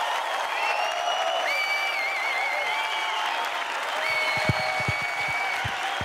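Studio audience applauding and cheering, with several long high held tones, one wavering, over the clapping, and a few low thumps in the second half.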